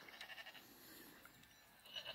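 Near silence: only faint, indistinct sound from a tablet's speaker.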